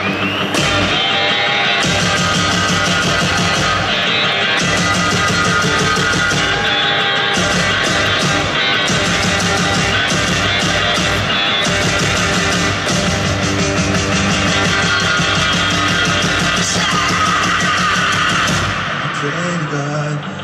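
A rock band playing live and loud: electric guitar, bass and a drum kit pounding steadily together. The full band thins out and drops in level near the end.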